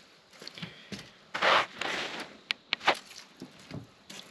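A person moving and handling things: a short scuffing rustle about a third of the way in, then two or three sharp clicks in quick succession just past the middle.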